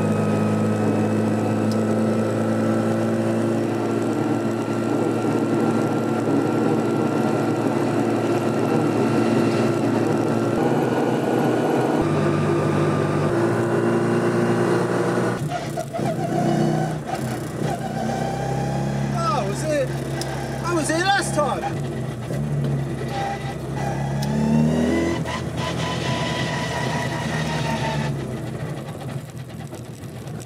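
Classic Mini's A-series four-cylinder engine and road noise heard inside the cabin: a steady drone at motorway speed. About halfway through the sound changes to slower driving, the engine note rising and falling, with a clear rise in revs near the end.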